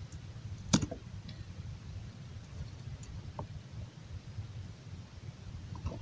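Low steady background hum with one sharp click under a second in and a fainter tick a little past the middle.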